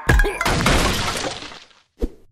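A hard hit from a sudden loud impact, followed by a crashing, breaking noise that dies away over about a second and a half.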